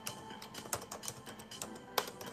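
Irregular typing clicks, several a second, over quiet background music.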